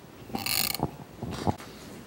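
Microphone handling noise: a scraping rustle, then a few short knocks.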